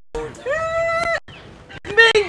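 A singer's voice holding one steady note for under a second, starting about half a second in, with brief quiet before and after it.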